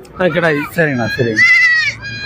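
A goat kid bleats once, a high call lasting about half a second near the end, over a man talking.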